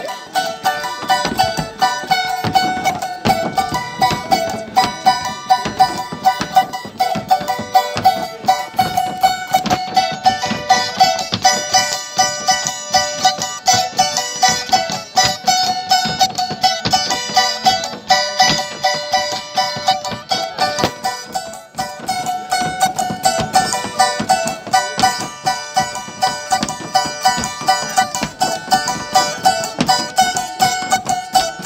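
Charango strummed fast and steadily with no singing, an instrumental passage of Andean traditional music.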